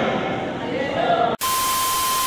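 Faint voices and room noise in a gym, cut off about two-thirds of the way through by a sudden burst of TV static hiss with a steady high test-tone beep: a glitch transition sound effect.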